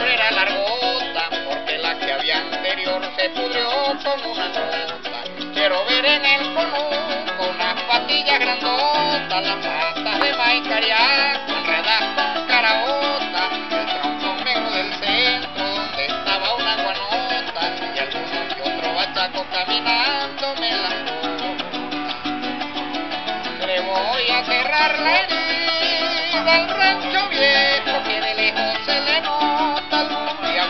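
Instrumental passage of Venezuelan llanero music: a llanera harp plays a running melody over its own moving bass line, with a cuatro strumming and maracas shaking.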